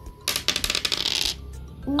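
A pair of dice rattled and thrown onto a hard tabletop: a quick, dense run of clicking clatter lasting about a second.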